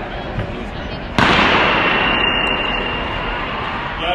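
Background noise of a large indoor track arena with people talking. About a second in, a sudden loud bang-like burst of noise rises over it and fades out slowly over the next few seconds.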